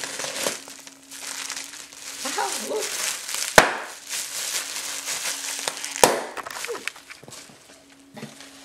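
Clear plastic wrapping crinkling and rustling as it is handled and pulled off an item by hand, with two sharp clicks, one about three and a half seconds in and one about six seconds in.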